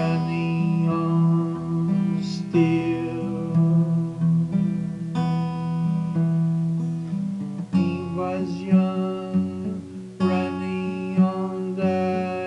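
Cutaway acoustic guitar being strummed, moving to a new chord about every two and a half seconds.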